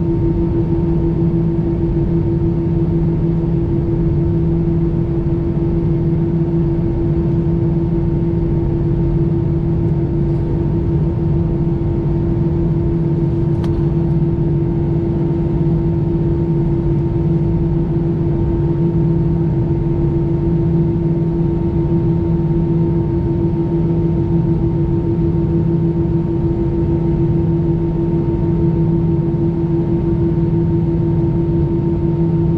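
Steady cabin drone inside an Airbus A320 on the ground, its engines at idle, with a constant low two-tone hum.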